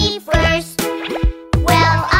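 Upbeat children's cartoon song music.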